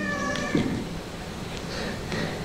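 A brief high-pitched voice gliding up and then down in the first half second, followed by a small click and then quiet room tone.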